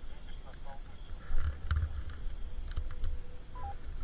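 Wind rumbling on the camera microphone as a skier rides through deep untracked snow, with a louder bump about a second and a half in and scattered short clicks. A short two-note electronic beep comes near the end.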